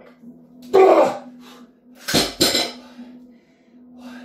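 A man's hard, strained exhale about a second in, then two sharp metallic clanks in quick succession a little after two seconds, from the steel power-twister spring bar being dropped down after an all-out set.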